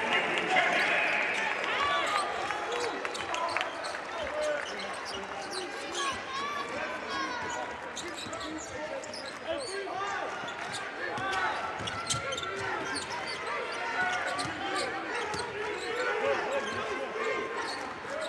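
Basketball dribbled on a hardwood court during live play, repeated bounces over voices and crowd noise in a large arena hall.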